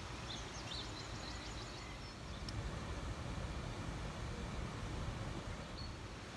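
Quiet outdoor ambience: a steady low rumble, with faint high bird chirps during the first couple of seconds.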